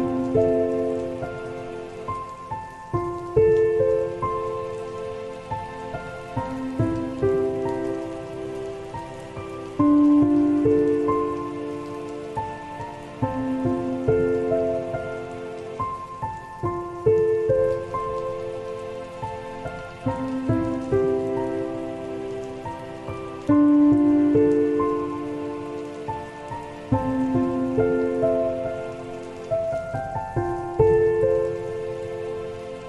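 Slow, soft solo piano melody of held notes over a steady sound of falling rain.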